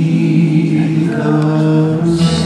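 A man singing one long note held steady at a single pitch, with musical accompaniment beneath it.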